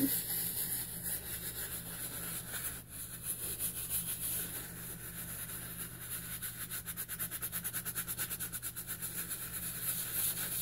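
A small brush scrubbing a white sneaker coated in a foamy baking soda and toothpaste paste: a scratchy rubbing that settles into quick, even strokes, several a second, in the second half.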